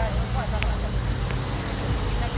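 Steady low rumble with faint voices in the background and two brief clicks, about half a second and a second and a quarter in.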